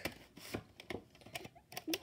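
Plastic VHS cassette and its case being handled, giving a string of sharp, irregular clicks and taps, about six or seven in two seconds.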